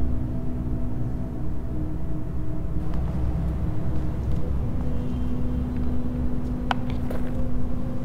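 Low, steady rumbling drone with a sustained hum, a dark ambient horror score, with a sharp click or two near the end.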